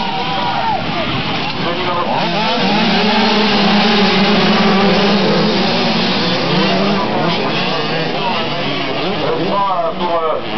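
A pack of 80 cc two-stroke motocross bikes revving hard off the start, many engines rising and falling in pitch over one another, loudest around the middle.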